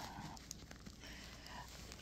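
Faint handling of a cardboard cosmetics box being worked open: a few soft taps and rustles over a low steady hum.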